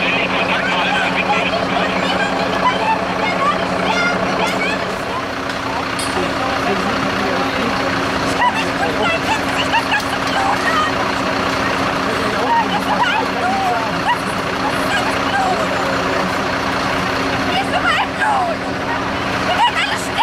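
A vehicle engine idling with a steady low hum, under many people talking at once.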